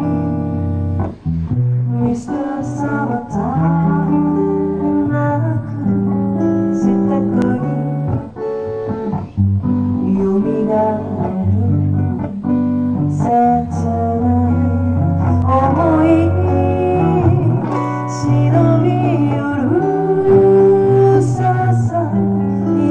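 A woman singing a melody into a microphone, accompanied by an acoustic guitar playing chords.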